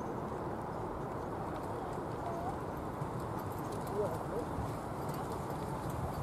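Hoofbeats of a pair of carriage horses trotting on a sand arena, pulling a driving carriage.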